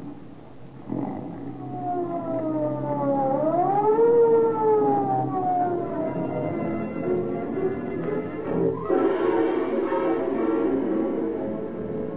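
A police car siren sound effect wailing: its pitch dips, rises sharply about three seconds in, then falls away slowly. A music bridge comes in about nine seconds in.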